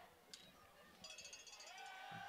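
Near silence: faint, distant voices of players and crowd at a football field.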